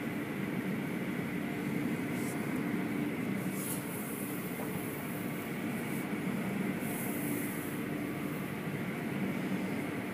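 Automatic tunnel car wash machinery running, heard from inside a car: a steady rumble and hum, with brief hisses of water spray a few times.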